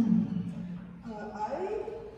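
Indistinct speech.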